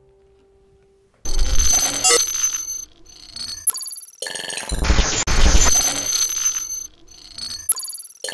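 The last acoustic guitar note fades out, and about a second in an electronic title sting starts: choppy loud bursts of synthesised sound with high ringing tones and deep bass hits, broken by short gaps.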